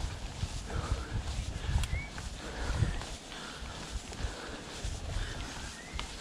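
YT Jeffsy full-suspension mountain bike rolling over a grassy dirt trail, with tyre noise and uneven low knocks and rattles from the bike, and the rider's hard breathing repeating about every three-quarters of a second as he climbs.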